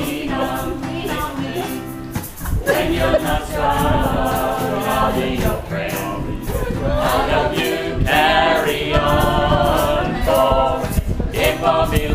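A small group of men and women singing a song together from song sheets, accompanied by a strummed acoustic guitar.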